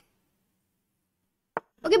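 Near silence, broken by a single short click about a second and a half in, just before a voice says "okay".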